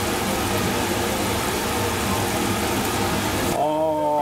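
A pan of salted water at a rolling boil with gyoza in it, bubbling with a steady, even hiss. It stops abruptly about three and a half seconds in.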